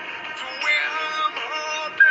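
Christian worship song playing: a singing voice holds long notes that bend and slide in pitch over steady backing music.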